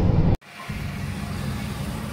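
Cabin noise of a Ford Ka 1.0 (three-cylinder) at highway speed: steady engine and road rumble. It cuts off abruptly less than half a second in, then comes back as a quieter steady low rumble.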